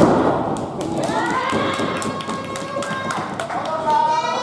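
A wrestler's body hitting the ring canvas with a loud thud, followed by a voice shouting over the hall and a string of sharp clicks.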